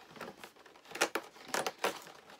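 Cardboard advent calendar door being torn open by hand, with short rips and crinkling of card and packaging; the sharpest rips come about a second in and twice near the end.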